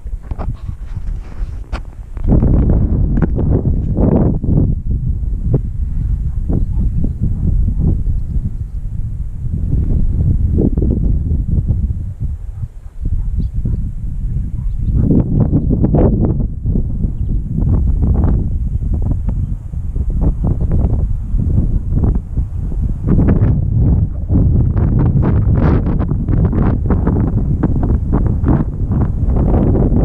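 Wind rumbling on the microphone, in loud gusts with brief lulls.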